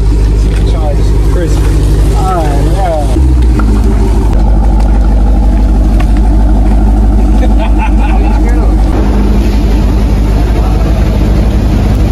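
Jeep Grand Cherokee's V8 engine idling steadily, stepping up to a louder, fuller idle about three seconds in. Voices sound over it in the first few seconds.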